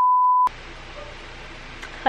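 A steady, single-pitch test-tone beep of the kind that goes with TV colour bars, cutting off abruptly about half a second in. Faint hiss follows.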